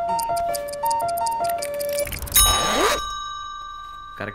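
Film background music: a quick light melody of short high notes, then a rising whoosh about two and a half seconds in that leaves a single high ringing tone fading away.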